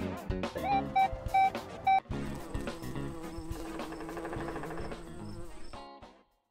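Intro music for a logo sequence: a few short, loud high notes, then a steady buzzing drone held for about four seconds that cuts off abruptly near the end.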